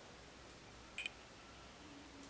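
Near-quiet room tone, with one short high-pitched beep about a second in.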